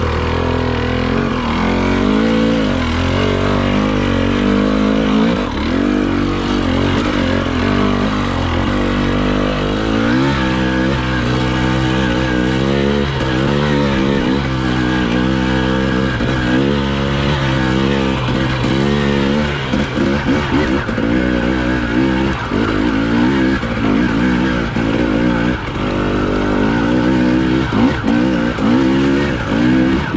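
Husqvarna TE 300i two-stroke enduro motorcycle engine under constant throttle changes on rough singletrack. The revs rise and fall every second or two, with no steady hold.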